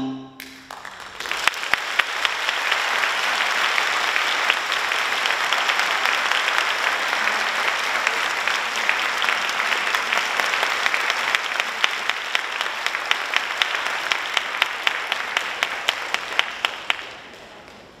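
Audience applauding, a dense patter of claps that thins to a few separate loud claps and fades out about a second before the end. At the very start the last notes of the xylophone ensemble ring away just before the applause breaks out.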